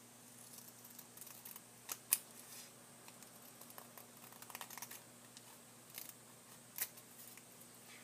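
Scissors cutting through several layers of folded origami paper at once: a run of faint snips and paper rustles, the sharpest snip about two seconds in.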